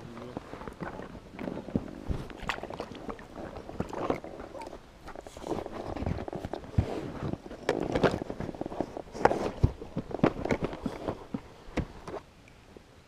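Close handling noise: irregular knocks, scrapes and rustles as a freshly caught perch is handled and a landing net is moved about on a float tube.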